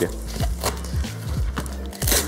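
Handling noise of a padded fabric strap and divider being fitted into a camera bag: rustling with a few soft knocks and brief scratchy strokes.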